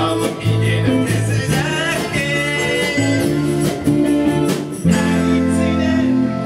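Live rock-pop band playing: strummed acoustic and electric guitars, bass, drum kit and keyboard with a steady beat, and a voice singing over them.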